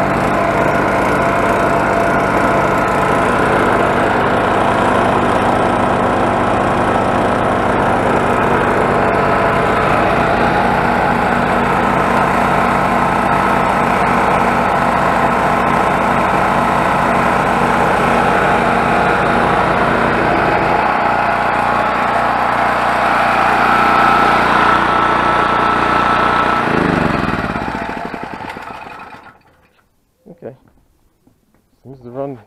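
Duromax MX4500 generator's single-cylinder engine running on propane under load from a pancake air compressor, with a low, fast chugging from the compressor pump. About 21 seconds in the chugging stops and the engine keeps running; near the end the engine is shut off and winds down, falling in pitch until it stops.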